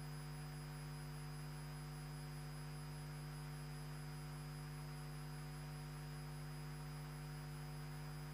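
A low, steady electrical hum: mains hum picked up in the sound feed, a deep buzzing tone with a ladder of higher overtones and a faint thin high whine above it, unchanging throughout.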